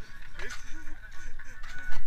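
Voices of people talking in the background in short, broken phrases, over a steady low rumble.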